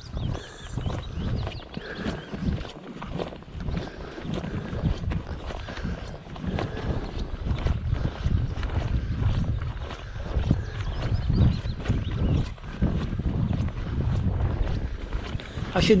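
Wind buffeting a body-worn camera microphone in an uneven low rumble that swells and fades, with footsteps on a dirt path as the wearer walks.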